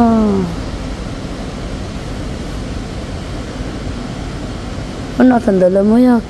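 Steady air-conditioning hum in a large showroom. A woman's voice trails off at the start and speaks again near the end.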